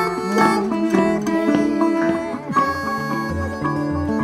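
Instrumental break in an acoustic folk-country song: acoustic guitar and other plucked strings playing, with sustained melody notes over them.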